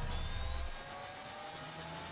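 Synthesised intro sound effect: a whooshing riser, several tones gliding slowly upward in pitch over a steady hiss. A low rumble under it drops away under a second in.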